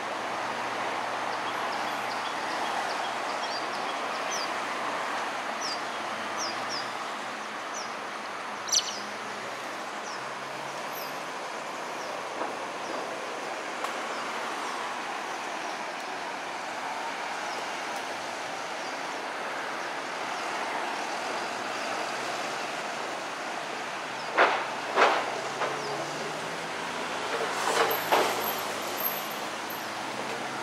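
Steady outdoor background rumble with a low hum underneath, a few faint short high chirps in the first ten seconds, and a handful of sharp knocks and clatter about three-quarters of the way through.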